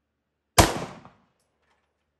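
A single 9mm pistol shot from a Browning Hi-Power about half a second in, its report dying away over about half a second.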